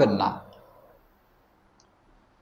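A man's voice speaking Bengali, trailing off at the end of a word, then near silence with one faint click near the end.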